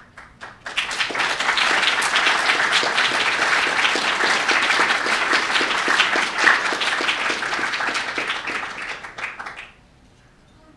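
Audience applauding: a few scattered claps, then dense applause from about a second in, which dies away shortly before the end.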